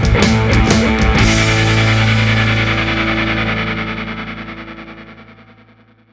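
Background rock music with distorted electric guitar. The drums stop about a second in, and a final chord rings out and fades away to silence near the end.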